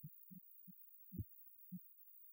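Faint, short low thumps from the programme's closing logo sting, about five in two seconds like a slow heartbeat pulse, with one deeper, louder thump about a second in.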